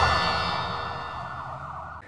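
The tail of a TV news programme's title stinger: a held chord of steady tones fading away evenly.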